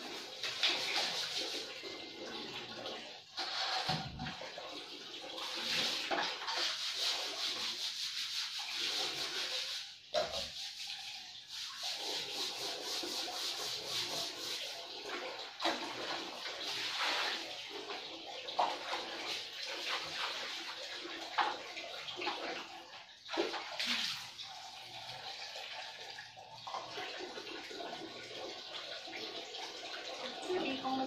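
Scrubbing a wet tiled shower floor and walls by hand: an uneven swishing scrub that comes and goes in irregular strokes, with water.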